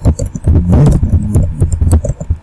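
Typing on a computer keyboard: a quick, irregular run of keystroke clicks with heavy low thuds beneath them.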